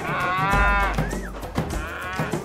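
Zebu cattle mooing: one long, wavering call through about the first second, ending in a short upturn, then a second call starting near the end.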